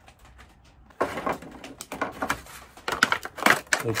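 Thin plastic bottles and cut bottle pieces being handled on a workbench, giving irregular crinkling and crackling that starts abruptly about a second in.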